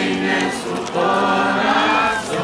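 A group of people singing together in long held notes, with a short break about halfway through.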